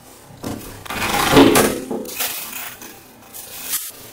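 Scraping, rustling clatter of objects being handled, loudest about a second in, with a few smaller knocks after.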